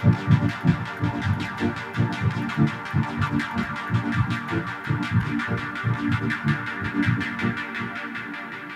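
Electronic music: a fast, throbbing low bass pulse with rapid ticks above it, slowly getting quieter.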